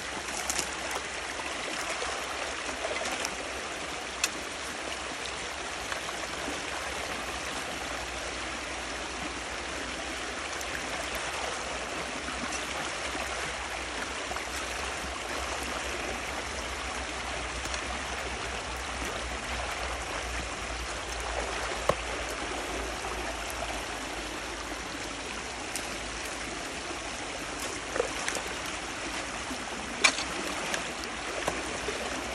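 Water rushing steadily through a breach in a beaver dam. A few short sharp knocks are scattered through it.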